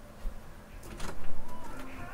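Bedroom door being opened by its knob: the latch clicks and the door swings open, loudest about a second in.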